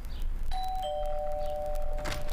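Two-note ding-dong chime in the style of a doorbell: a higher note about half a second in, then a lower note, both ringing on together.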